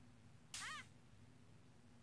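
A short, faint cry of pain about half a second in, with a brief hiss at its start, falling in pitch: a cartoon character yelping as a lit cigar is pressed to her arm.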